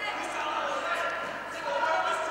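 Voices in a large echoing sports hall, with a couple of short dull thuds, one near the start and one about a second in.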